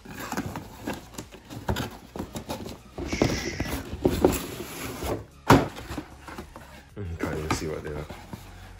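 Cardboard boxes being handled: a shoe box slid and pulled out of its cardboard shipping carton, with scraping, rustling and knocks, and one sharp thump about halfway through.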